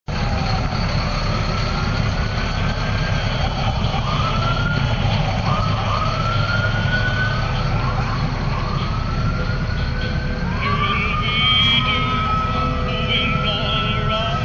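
Emergency-vehicle sirens winding up in pitch again and again over a steady low engine rumble, with a brief higher warble about two-thirds of the way through.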